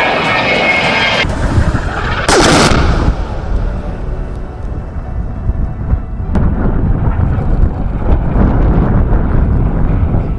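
Explosions of ordnance hitting the ground, heard as heavy low rumbling with sharp strikes, and a brief loud rushing sound falling in pitch about two and a half seconds in.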